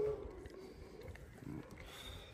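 White lioness giving a faint, low growl as her sore hind leg is pressed: a pain response.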